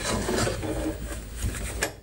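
Rubbing and scraping handling noise, with a sharp click near the end.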